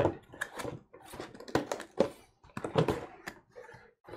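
Cardboard mailer box opened by hand: a run of short, irregular scrapes and taps as the tuck-in lid is pulled free and folded back.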